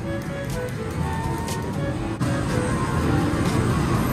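Electronic arcade music and game jingles, a tune of short held notes, over a steady low rumble of a busy game arcade. A single sharp knock comes about halfway through.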